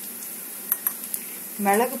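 A spoon clicking three times against a dish as ingredients are spooned out, over a steady faint hiss.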